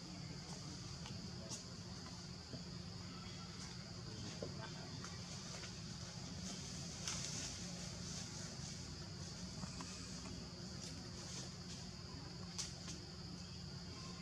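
Outdoor ambience of a steady, high-pitched insect drone, with a few faint scattered clicks over a low background rumble.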